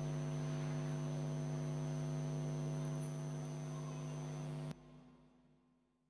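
A steady, low mains hum that cuts off suddenly about three-quarters of the way through.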